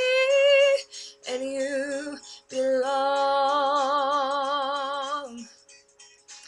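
A woman singing wordless held notes: two short notes, then a long note of about three seconds with a wavering vibrato that fades out near the end.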